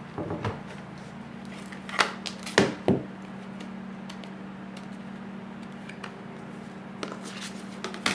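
Plastic embossing plates and a clear embossing folder being handled: a few sharp clicks and knocks about two to three seconds in, with lighter ticks before and after, over a steady low hum.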